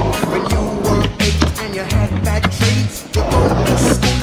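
Music with a deep bass line playing throughout. Under it, a skateboard's wheels roll on concrete, with sharp clacks from the board.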